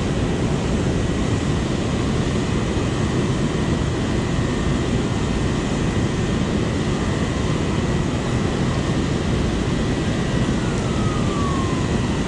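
Water rushing over a low-head dam spillway: a steady, loud, deep rushing noise with no breaks.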